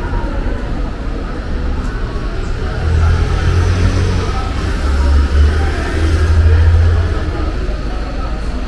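City street traffic: a motor vehicle's engine rumbling low, growing louder from about three seconds in and easing off near the end.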